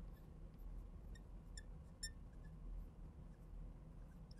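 Marker writing on a glass lightboard: a few faint, short squeaks and ticks between about one and two seconds in, over a low, steady room hum.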